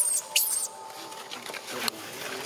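Baby macaque squealing: a few short, very high-pitched cries in the first half-second or so, then it goes quieter, with one brief sharp squeak near the end.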